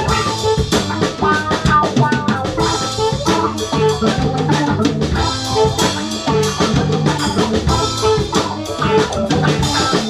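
Live funk band jamming, with a busy drum-kit groove of snare, rimshots and bass drum out front over keyboards and guitars.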